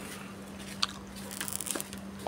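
Faint clicks and crackles of hands handling an opened Oppo smartphone, pressing the battery and internal parts back into place. There is one sharper click just under a second in and a few light ticks later.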